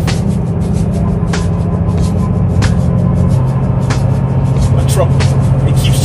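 Semi truck's diesel engine droning low inside the cab on a steep 7% downgrade, the truck pushing to run faster than the driver wants. The engine note shifts lower about halfway through, and occasional sharp ticks sound over the drone.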